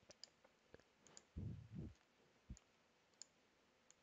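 Near silence with a few faint computer mouse clicks, and a soft low bump about a second and a half in.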